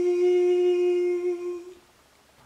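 A single voice holds the last long note of a sung worship chorus, a steady hummed tone that fades away near the end.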